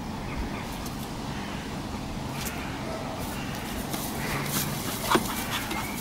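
Two dogs, a lurcher and an American bulldog, play-mouthing at each other's faces with soft snuffles and rustling, and a sharp click about five seconds in, over a steady low hum.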